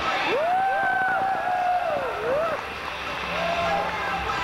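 Drawn-out vocal notes, with pitch sliding up into long held tones that waver and fall, two voices overlapping, while the bass beat of the music drops out. A shorter held note comes again near the end.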